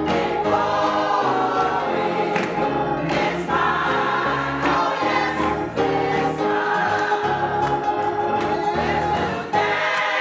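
Gospel choir singing in full voice with an instrumental accompaniment holding low bass notes underneath.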